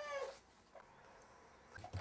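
A single short high-pitched cry that rises and falls in pitch, meow-like, in the first half second, followed by near silence.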